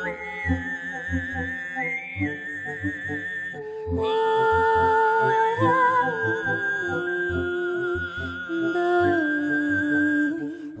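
Live folk-fusion music: a male voice and a female voice sing long held notes with vibrato, with a reed wind instrument, over a steady low pulse about twice a second. It grows fuller and louder about four seconds in.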